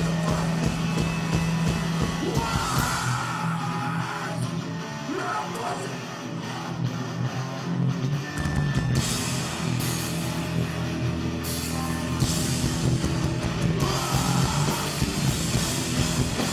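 Hardcore punk band playing live: distorted electric guitars, bass and drums with crashing cymbals, and a shouted vocal. The lowest end drops away for a few seconds and the full band comes back in about eight seconds in.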